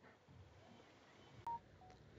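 Near silence with faint room tone. About one and a half seconds in come a short click and a brief electronic beep, then a fainter, lower second beep just after.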